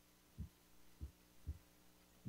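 Near silence with a faint steady hum and three soft, low thumps spread through about a second.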